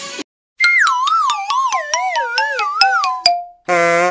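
Music breaks off, and a comic sound effect follows: a wavering tone that slides down in pitch, with a fast ticking under it, about five ticks a second. It ends with a short buzzy honk near the end.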